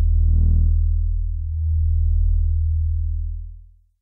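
Low, steady electronic drone with a brighter swell about half a second in, fading out to silence near the end.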